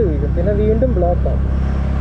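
A motorcycle engine running steadily at low road speed, a constant low hum, with a man's voice speaking over it for about the first second.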